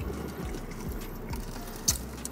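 Faint small crackles and clicks of crispy fried chicken being handled and bitten, with one sharper click near the end, over a steady low hum.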